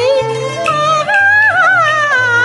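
Cantonese opera music: a high melody line that glides and wavers on long held notes, over an accompaniment with a low bass line that steps from note to note.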